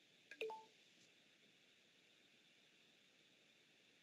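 Near silence on a video-call audio feed, broken by one brief faint click and blip about half a second in.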